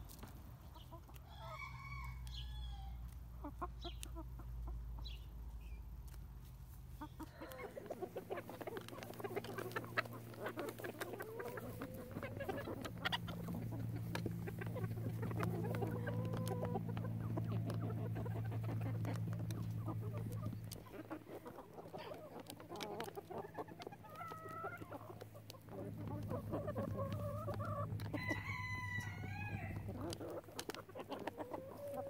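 A flock of backyard chickens clucking and calling around a feed dish, with many sharp taps of beaks pecking. A longer, louder chicken call comes near the end.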